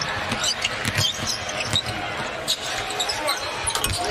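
Basketball being dribbled on a hardwood court, a few short thuds, with sneakers squeaking and the arena crowd murmuring behind.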